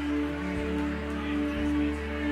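Live worship band playing soft instrumental music: held chords over a steady low bass note, with a murmur of congregation talk underneath.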